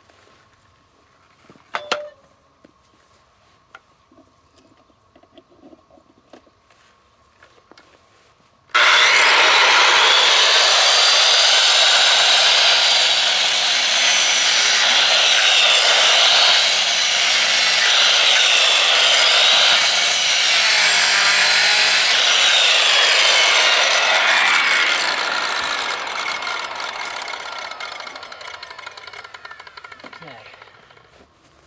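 A 2½-horsepower Skil circular saw running on a battery-fed 2000-watt inverter. It starts suddenly about nine seconds in, cuts wood for about fifteen seconds, then dies away over the last few seconds. A few small handling clicks come before it.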